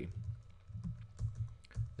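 Computer keyboard typing: several separate key presses with short gaps between them, over a low steady hum.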